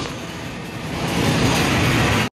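Steady background din of a busy amusement arcade, a dense noisy wash that dips slightly and then builds again.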